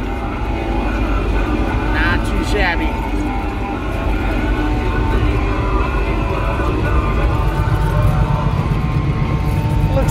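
Motor grader's diesel engine running steadily under load, heard from inside the cab, growing louder in the last couple of seconds. A brief voice cuts in about two seconds in.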